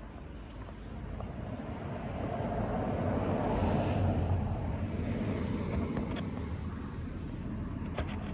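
A car passing along the street: road and engine noise swelling to a peak around the middle and then slowly fading.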